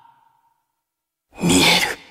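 A man's breathy, echoing voice: the tail of a spoken word dies away at the start, then after about a second of silence a short, loud sigh-like vocal sound comes near the end and trails off in echo.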